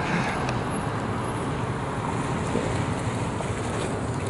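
Steady road traffic noise: an even rumble of vehicles moving on the road.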